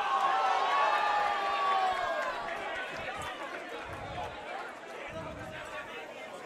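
A loud, drawn-out yell that slides slowly down in pitch over about the first two seconds, followed by a crowd of people talking and calling out.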